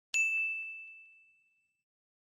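A notification-bell sound effect: one bright, high ding struck once, ringing out and fading away over about a second and a half.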